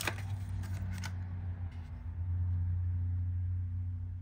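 A steady low hum throughout, getting louder about halfway through. Over it come a sharp click at the start and a few faint light ticks in the first second, like small handling noises.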